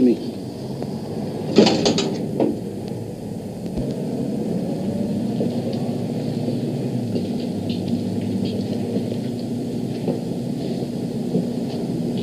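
A steady low mechanical hum, like a motor running, holding one low tone, with a short, louder, voice-like sound about two seconds in.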